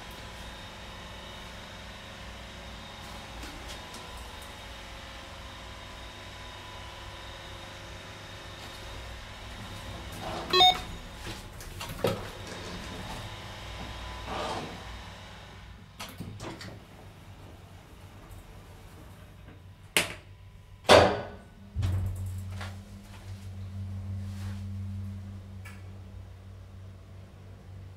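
1972 KONE ASEA Graham telescoping hydraulic elevator in operation. A steady machine hum with thin whining tones lasts about the first sixteen seconds. A short ping and clicks come around the middle, then two loud thumps a second apart near the end, and a low electric hum starts right after them.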